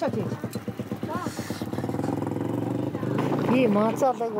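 A person talking over a steady low motor hum.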